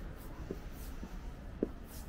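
Footsteps on pavement at an even walking pace, about two steps a second, each a short soft knock with a light shoe scuff, over a steady low rumble.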